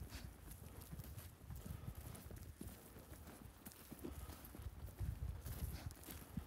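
Footsteps walking over dry, loose, freshly sown topsoil: a continuous run of soft, dull thuds.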